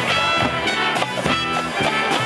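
High school marching band playing its halftime show: brass and woodwinds holding chords over a steady percussion beat, with a front ensemble of mallet keyboards and amplified instruments.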